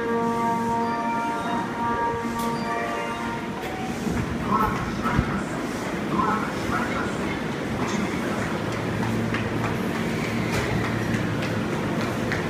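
A short run of steady chime tones ends about three seconds in. An electric commuter train then moves off from the platform: a low motor hum comes in about nine seconds in, with scattered light clicks.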